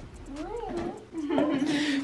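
A young child's wordless vocalizing: a short rising-and-falling whine, then a held, steady hum in the second half.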